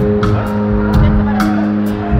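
Live band playing in a concert hall, heard from far back in the crowd: held chords over a steady drum beat of about two hits a second.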